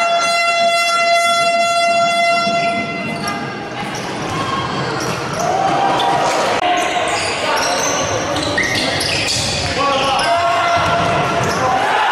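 Sports-hall crowd noise during a futsal match. A horn holds one long steady note for nearly three seconds at the start. Voices shout, shorter horn-like notes sound later, and thuds of the ball and feet on the wooden court recur throughout.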